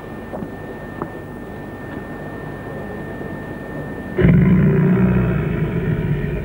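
Horror film soundtrack: a low, steady rumbling drone with a thin high tone running through it, then a sudden loud low rumbling chord about four seconds in that holds.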